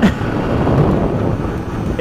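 Steady wind rush on the helmet microphone over the low running noise of a Yamaha FZR600 sportbike riding along a paved road.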